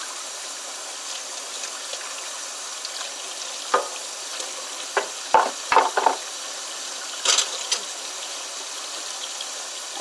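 Tap water running steadily into a stainless steel sink while dishes are washed, with dishes and cutlery clinking against each other and the sink a few times, mostly in the middle of the stretch.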